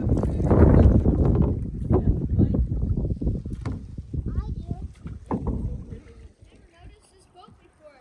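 Canoe paddles splashing and stirring lake water, loudest in the first few seconds and then dying away to much quieter water sound near the end, with faint voices.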